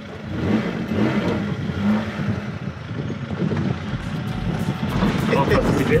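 Lada 2101's four-cylinder engine running as the car drives, heard from inside the cabin, getting louder over the last few seconds.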